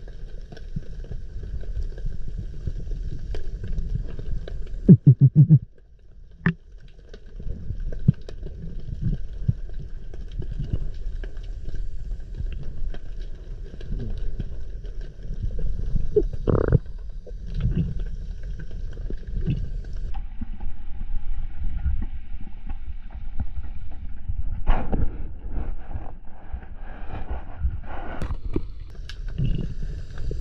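Underwater sound from a freediver's camera: a steady low rumble of water moving against the housing, with scattered clicks and knocks. A short burst of loud knocks comes about five seconds in, and faint steady tones run underneath.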